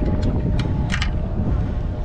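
Steady low rumble with a faint steady hum from a bass boat on the water, and a couple of short sharp ticks about a second in while a bass is played on a spinning reel.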